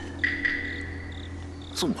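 Crickets chirping in a steady, continuous trill over a low, steady hum.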